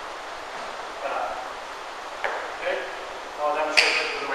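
A man's voice in a few short snatches over a steady background hiss, with two sharp knocks, one past the middle and a louder one near the end.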